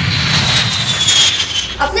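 Jet airliner engines running loud as the plane passes low, a rushing roar with a high whine that slowly falls in pitch.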